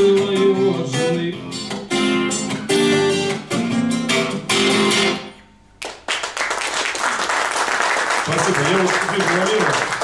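Twelve-string acoustic guitar strumming the closing chords of a song, stopping about five and a half seconds in. After a brief gap, a dense, even patter of audience applause follows.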